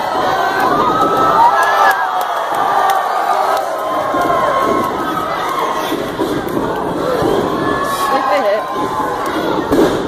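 Wrestling crowd cheering and shouting, many voices yelling at once, loud throughout.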